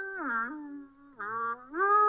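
A single-line melody played back dry, without its phaser effect: a held note that slides down in pitch about half a second in, dips quietly around the middle, then slides back up near the end.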